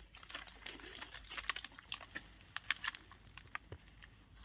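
Faint, irregular clicks and ticks, several a second, the sharpest just under three seconds in.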